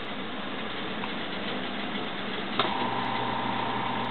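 A switch clicks about two and a half seconds in, and a small capacitor-run single-phase induction motor starts humming steadily, with a low hum and a higher steady tone, as it is switched to run in one direction.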